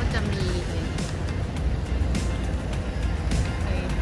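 Wind rumbling on the microphone of a camera riding on a moving bicycle, with street traffic noise and background music.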